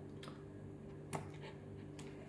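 Two faint clicks about a second apart as a handheld digital lux meter and its sensor head are handled, over a low steady hum.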